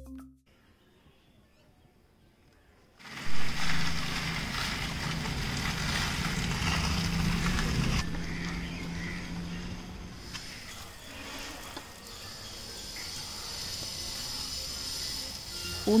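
Outdoor street ambience with a vehicle engine running steadily, starting suddenly about three seconds in after a brief silence.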